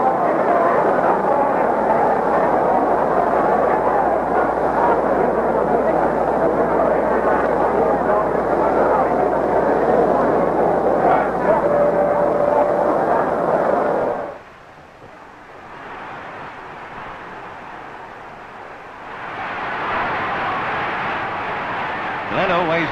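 Large stadium crowd noise, a dense roar of many voices on an old film soundtrack with a low mains hum under it. It cuts off abruptly about two-thirds of the way through, leaving quieter noise that swells again near the end.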